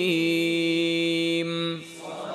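A man's voice in melodic Quranic recitation, holding one long steady note that stops near the end.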